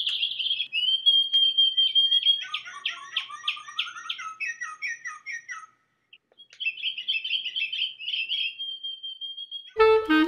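A songbird singing: a long trill, then a run of quick chirping notes, a short pause about six seconds in, and another long trill. Saxophone music comes in right at the end.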